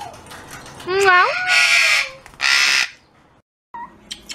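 Male eclectus parrot calling: a rising pitched note about a second in, followed by two loud, harsh squawks.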